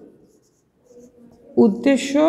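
Marker pen writing on a whiteboard, faint scratching strokes, then a woman's voice starts about a second and a half in and is the loudest sound.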